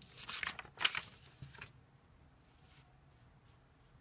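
Sheets of paper rustling and sliding as they are handled, a rough burst lasting about a second and a half near the start.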